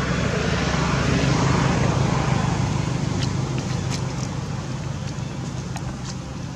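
A motor vehicle's engine running with a steady low hum, growing louder over the first two seconds and then slowly fading, as if it is passing by. A few faint clicks sound in the second half.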